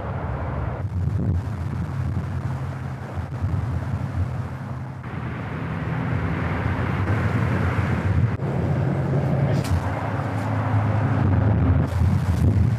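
Outdoor location sound dominated by wind buffeting the microphone: a steady, loud low rumble with no speech or music.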